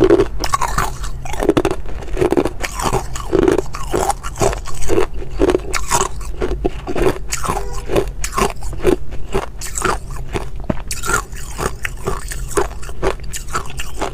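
Hard ice cubes being bitten and chewed close to a microphone: a continuous run of sharp, crisp cracks and crunches, a few per second.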